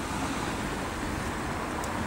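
Steady outdoor background noise: an even hiss and rumble with no distinct event.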